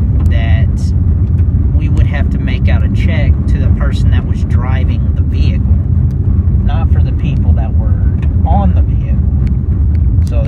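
Steady low rumble of a moving car heard from inside the cabin, with a person talking over it on and off.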